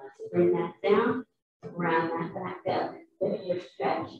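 A person's voice talking in short phrases with brief pauses, the words indistinct.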